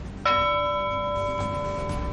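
A single bell-like chime struck about a quarter second in, its cluster of overtones ringing on for about a second and a half: the news bulletin's sting marking the start of the quick-news segment.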